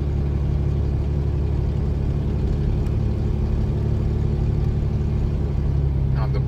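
Toyota Land Cruiser's engine and tyre noise heard inside the cabin while cruising at a steady speed on pavement: a steady low drone.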